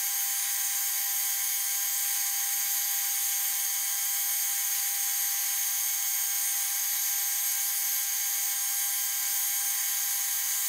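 Metal lathe running steadily while its tool takes a turning cut on a steel bar, a steady whine over hiss.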